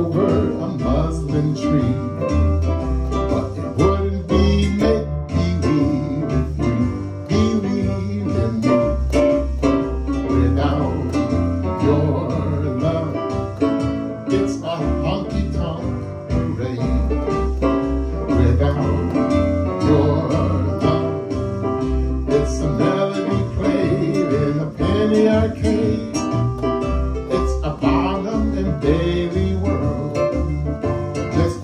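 Electronic keyboard playing an instrumental passage of a jazz standard, with a steady moving bass line under the chords.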